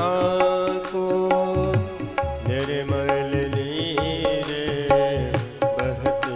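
Live Hindu devotional bhajan music: sustained melody lines from an electronic keyboard over a steady beat of dholak drum strokes.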